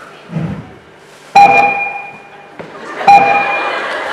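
An electronic chime tone sounds twice, about 1.7 seconds apart, each struck sharply and fading over about a second, in a large hall.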